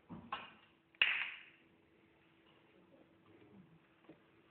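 Snooker break-off: a sharp crack of balls colliding about a second in, fading over about half a second, with a shorter, fainter sound just before it.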